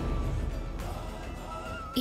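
Dramatic background score: a low rumbling swell with a faint held high tone over it.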